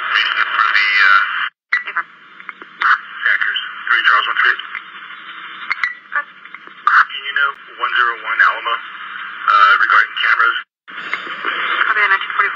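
Police two-way radio channel: a narrow, tinny band of static hiss with brief, unintelligible voice transmissions, cutting out to silence twice for a moment.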